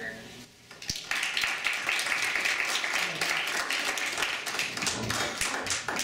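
Audience applauding, starting about a second in after a single thud and dying down near the end.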